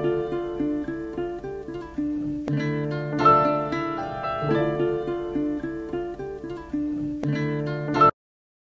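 Sampled instrumental music playing back from a record: a pitched melody over a steady bass line, with a click about two and a half seconds in and again near the end.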